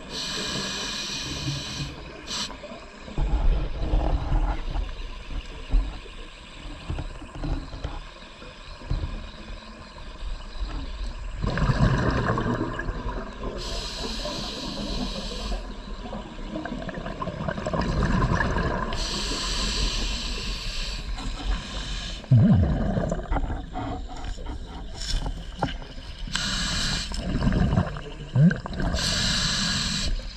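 Scuba diver breathing through a regulator underwater, heard close: a hissing inhale and a bubbling exhale, one breath every several seconds.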